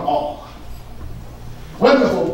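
A man's voice in short, emphatic bursts, with a pause of about a second and a half in the middle before he speaks again.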